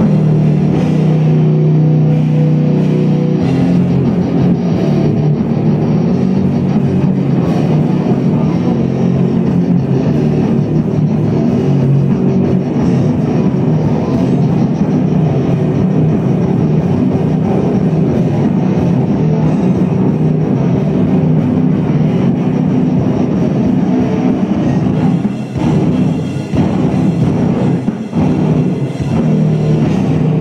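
A rock band playing live through a club PA: loud electric guitars and drum kit. It opens on a chord held for about three seconds, then the full band plays on.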